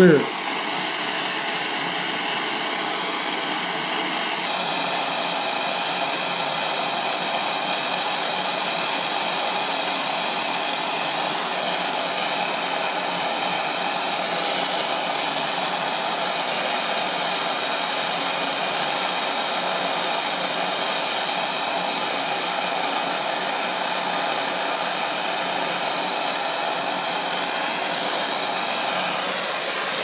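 Gas torch with a big tip running with a steady roar, its flame playing on a 16-gauge steel concho to bring it to a low red glow so 65% silver solder will flow under the overlay.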